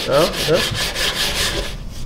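Sandpaper on a hard sanding block rubbed rapidly back and forth along the edge of a shaped prototype body-kit block, a dense scratchy rasp that stops just before the end. The block is being cut down to a drawn line to put a straight chamfer on the edge. The material is harder going than foam.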